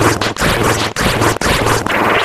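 Heavily distorted, layered audio effect: a loud, dense wall of harsh, noisy sound, broken by brief dropouts about twice a second.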